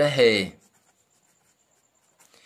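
Ballpoint pen writing on paper, very faint, after a spoken word ends about half a second in. A faint steady high whine runs underneath.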